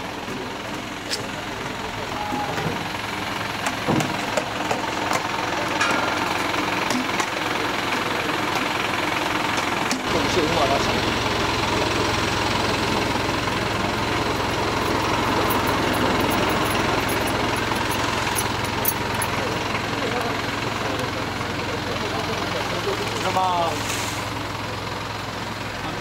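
Crowd voices talking over one another, and from about ten seconds in a truck engine running steadily beneath them.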